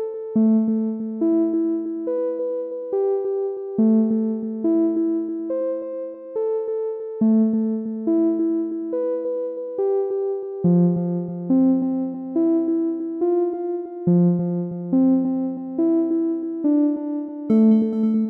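Background music: a soft electric-piano or synthesizer keyboard playing gentle broken chords, a new note about every second, over a slow repeating chord sequence.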